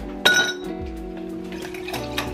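A drinking glass clinks once, sharply, with a short bright ring that dies away within a moment, over background music.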